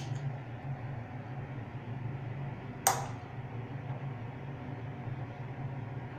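A single sharp click about three seconds in, from hands working on the thermostat and wiring of an Ariston electric water heater, over a steady low hum.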